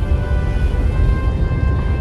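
Orchestral film score with held, steady string tones over a heavy low rumble.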